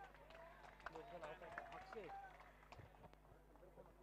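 Near silence, with faint distant voices in the middle.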